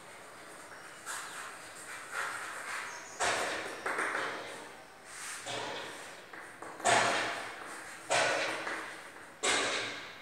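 Chalk knocking and scratching on a blackboard as words are written, giving a series of sharp knocks about a second apart that ring out briefly in a large, echoing room.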